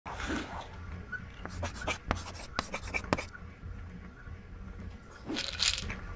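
Sound effects for an animated logo intro: a quick run of sharp clicks and pops in the first half, then a short noisy swell near the end, over a low steady background noise.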